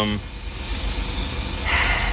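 Low steady rumble inside a vehicle's cabin, with a brief hiss near the end.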